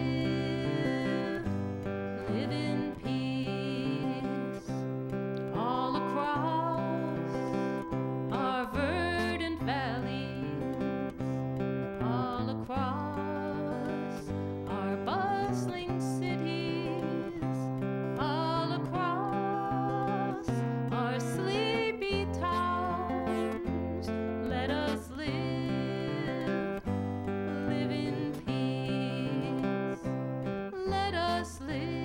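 A woman singing to her own strummed acoustic guitar, with long held notes over steady chords.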